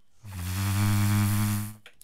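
A man's voice holding one low, steady note, like a long hum, for about a second and a half.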